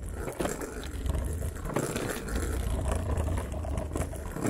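Scooter rolling over paved street stones: a steady low rumble with scattered rattles from the wheels and frame.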